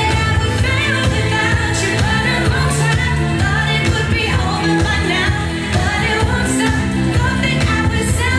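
Dance music with singing and a steady beat, played by the DJ over the venue's sound system.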